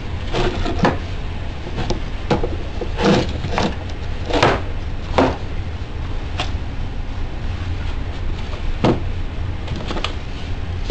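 White PVC pipe fittings being handled and repositioned on a workbench: about ten scattered plastic knocks and clatters, most in the first half, with one more near the end. A steady low hum runs underneath.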